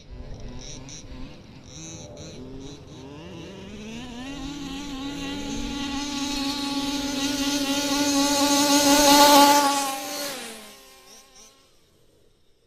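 Small two-stroke petrol engine of a 1/5-scale RC car: uneven revving and short blips at first, then held at high revs with a steady buzzing note that grows louder for several seconds. About ten seconds in the revs and level drop away quickly.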